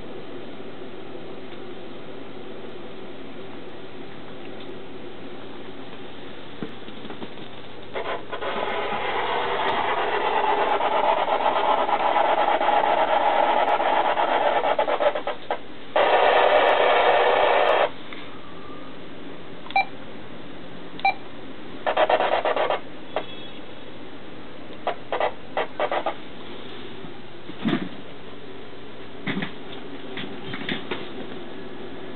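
Radio static over a steady low electrical hum. The hiss swells for several seconds, then a loud burst of static starts and stops abruptly and lasts about two seconds. Scattered clicks and short crackles follow.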